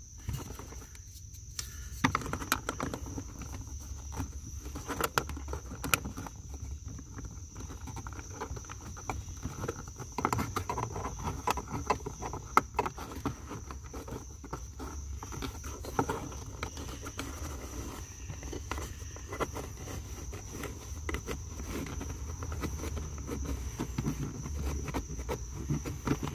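Scattered clicks and rustles of a dash cam's power cord being worked by hand under plastic door-sill trim, over a steady high-pitched insect drone.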